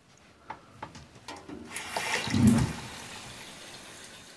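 A few light clicks, then water running from a tap, swelling about two seconds in and going on steadily.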